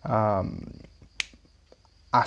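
One sharp click a little over a second in, with a fainter tick just after, following a brief drawn-out spoken syllable.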